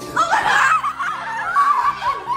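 Young people laughing and shrieking loudly in a tiled stairwell.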